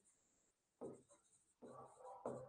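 Faint sounds of a pen writing on a board, with a short stroke about a second in and a few more near the end.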